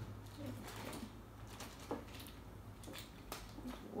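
Faint rustling of a plastic bag, with a few soft knocks as raw chicken drumsticks are shaken out of it into a pressure-cooker pot, over a low steady hum.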